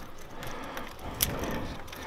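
Faint metallic clicks and handling noise from a hand working the old, already-unscrewed oil pressure sensor off a VR6 oil filter housing, with one sharper click a little after a second in.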